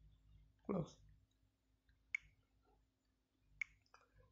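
Two short, sharp clicks about a second and a half apart, following one spoken word, in near silence.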